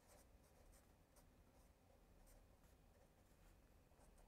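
Faint squeak and scratch of a felt-tip marker writing on paper, a string of short pen strokes.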